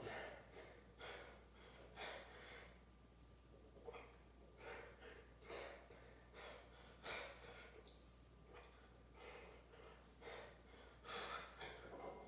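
A man's effortful breathing: quick, sharp breaths about once a second as he strains through a set of one-arm hanging plate curls.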